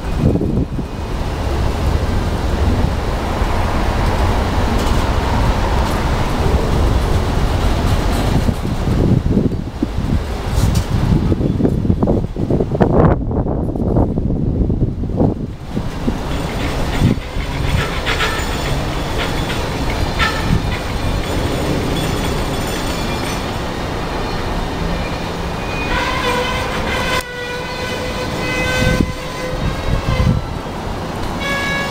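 Freight train of empty flatcars rolling past: a steady rumble and clatter of wheels on rail, with wind on the microphone. In the second half, high-pitched wheel squeals come and go.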